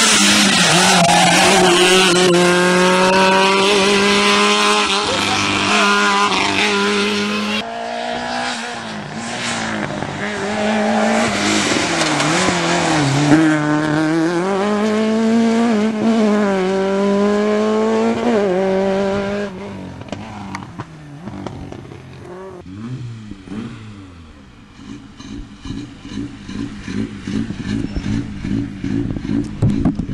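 Rally car engine revving hard on a gravel stage, its pitch climbing and dropping again and again with the gear changes as the car passes. After about twenty seconds the sound drops to a much quieter, fainter engine.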